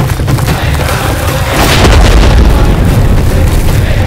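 Deep boom of a dramatic blast or impact sound effect, swelling about a second and a half in and rumbling on, with music underneath.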